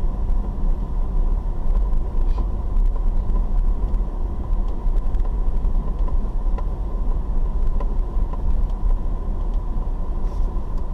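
Car driving along a rough dirt road, heard from inside the cabin: a steady low rumble of tyres and engine, with a faint steady whine and scattered small ticks.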